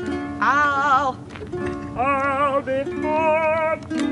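A woman singing three long held notes with vibrato over ukulele chords; the chords change between the notes.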